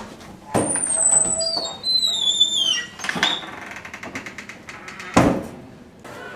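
School hallway doors being pushed open and swinging shut: a thud about half a second in, high squeals falling in pitch over the next two seconds, and a loud bang about five seconds in.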